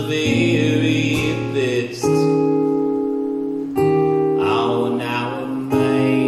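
Acoustic guitar strumming chords, each struck and left to ring, with a new chord about every two seconds.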